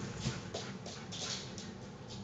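Dog claws clicking on a hard floor, a string of faint, irregular taps as the dogs move about.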